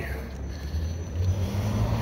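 Downtown street traffic: a low vehicle engine rumble that grows louder in the second half.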